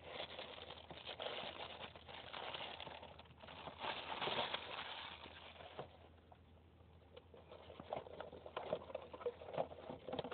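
Thin plastic bag crinkling and rustling as a compact digital camera is unwrapped from it by hand. The crackle dies down after about six seconds, leaving a few light handling clicks.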